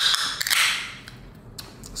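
Ring-pull tab of an aluminium soda can cracked open, then a short hiss of escaping carbonation about half a second in that fades within a second.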